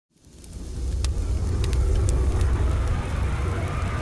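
A deep, low rumble fades in over about the first second and then holds steady, with a few faint sharp crackles in the first two seconds: a sound effect laid under an animated intro.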